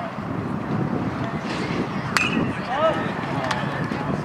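A metal baseball bat hits a pitched ball about two seconds in: one sharp crack with a short, high ring after it. A single shout follows, over low crowd chatter.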